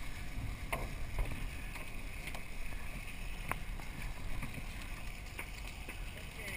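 Steady low rumble of a sportfishing boat's engine under the rush of water along the hull and wind on the microphone, with a few sharp clicks scattered through it.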